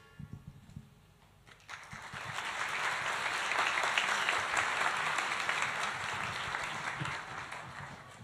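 Audience applause in a large hall, starting about one and a half seconds in, swelling to a steady level and easing off near the end.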